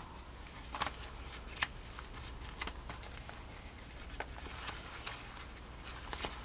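Paper pages of a thick, collaged junk journal being turned and leafed through by hand: soft paper rustling with a few sharp little flicks.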